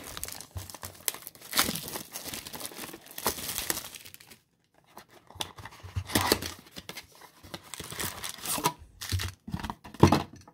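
Plastic shrink-wrap being torn and peeled off a small cardboard trading-card box, with irregular crackling and crinkling. There is a short pause about four seconds in, then more crinkling as the box is opened.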